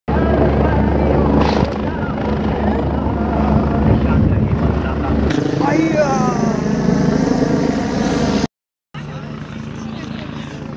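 Helicopter running close by, its rotor and turbine making a loud steady hum; a voice calls out about six seconds in, and the sound cuts out for half a second near the end.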